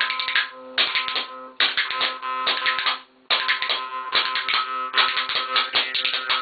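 A Rajasthani jaw harp (morchang) plucked in a fast rhythm, its drone carrying shifting overtones, with a pair of spoons clacking rapid beats alongside it. The playing breaks off briefly a few times, almost to silence for a moment just after three seconds in.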